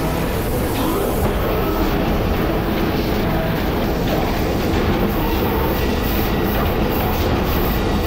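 Laser cutting machine running as it cuts stucco-embossed aluminium sheet: a loud, steady machine noise that does not let up.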